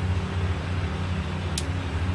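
A steady low mechanical drone, like an idling motor, runs throughout. About one and a half seconds in, a single sharp click comes from a dead Bic lighter as its metal hood is pried off with a fingernail.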